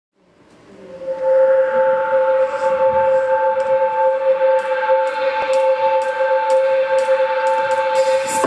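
Instrumental intro of a pop song: a sustained chord fades in over the first second and then holds steady. Light, regular percussion ticks join a couple of seconds in.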